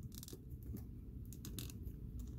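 Faint clicks and scratchy rubbing of a plastic action figure being handled, with several light clicks spread irregularly through the moment.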